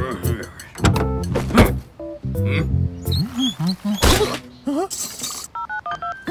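Cartoon soundtrack: playful background music with wordless character vocal sounds that glide up and down, and a few short knocks or thunks.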